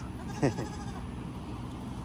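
A single short animal call, falling steeply in pitch, about half a second in, over a steady low background hum.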